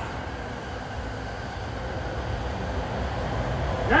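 Steady low rumble of city traffic noise, getting slightly louder toward the end.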